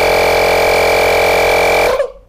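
Makita DMP180 18V cordless tyre inflator's compressor running steadily and loudly on a van tyre, then cutting off suddenly near the end as it auto-stops on reaching its 20 psi setting.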